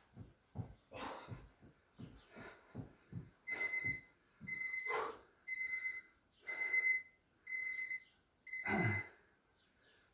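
Quick thuds of feet and knees on a blanket-covered floor during mountain climbers. From about three and a half seconds in, an electronic interval timer beeps six times, about once a second, counting down the end of a 30-second exercise.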